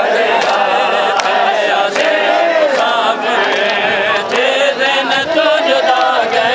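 A group of men chanting a nauha, an Urdu lament for Husain, together in one loud continuous strain, broken by a few sharp slaps.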